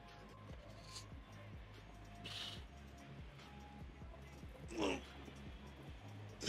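Faint background music with a steady bass line, over a man's heavy breathing during seated cable rows; a short, strained exhale falling in pitch comes about five seconds in.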